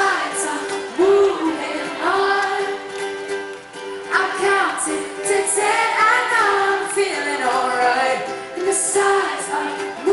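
Live acoustic pop-punk song: a female lead voice singing over an acoustic guitar.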